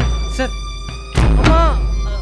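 A heavy thud about a second in as a man's body hits the floor, followed at once by a short cry, over a sustained music drone.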